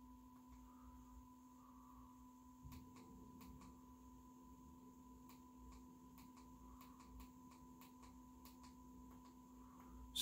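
Near silence: room tone with a faint steady electrical hum and whine, and a few faint clicks.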